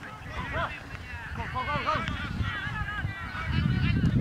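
Several voices shouting short calls from the pitch, overlapping. Wind rumbles on the microphone underneath, stronger near the end.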